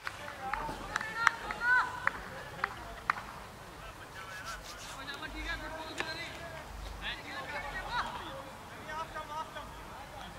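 Indistinct voices of cricketers calling and chatting across the field, with a few sharp clicks scattered through.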